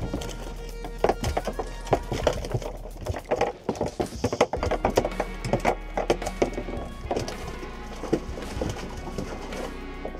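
Background music, over irregular knocks and slaps from freshly landed snapper flopping on the deck of a small boat.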